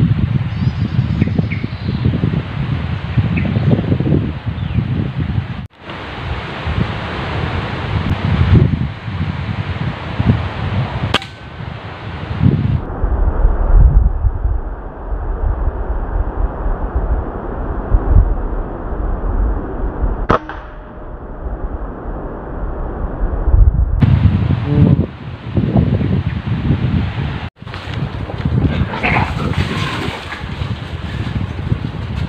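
Wind buffeting the microphone in a low, uneven rumble, broken by two sharp air-rifle shots, one about eleven seconds in and one about twenty seconds in. The background changes abruptly a couple of times where clips are joined.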